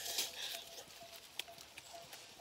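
A short rustle, then a couple of light clicks, from hands picking at and handling small green fruits among dry leaves.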